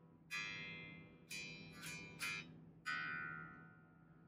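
Electric bass strings plucked one at a time while the bass is being tuned: five faint plucked notes, each ringing and fading away.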